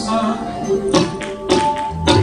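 Instrumental interlude of live Sindhi folk music: tabla strokes over held harmonium and keyboard notes, with no singing.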